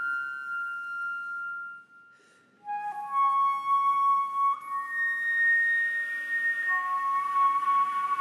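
Concert flute playing slow, sustained notes: a long held note dies away about two seconds in, a brief silence follows, then new long notes enter with an airy, breathy edge.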